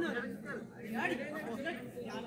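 Indistinct chatter of several voices talking and calling out at once, without clear words.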